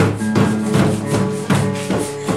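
Acoustic guitar strumming chords over an improvised drum, a plastic box struck by hand, keeping an even beat of about three hits a second.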